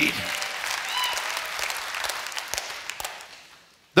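Church congregation applauding, the clapping fading away over about three and a half seconds.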